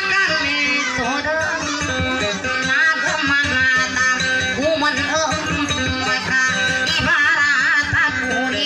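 Live dayunday song: a woman singing a wavering melody to her own acoustic guitar accompaniment.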